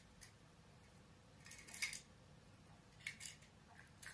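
Near silence broken by a few faint, brief clicks and rustles, a cluster about a second and a half in and another near three seconds: small handling sounds of knitting work, needles, yarn and stitch markers being moved by hand.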